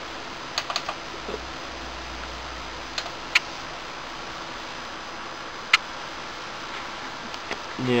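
A few sharp plastic clicks, a quick cluster under a second in and single ones about three and six seconds in, from monitor buttons pressed to switch the display input, over a steady background noise of computer fans.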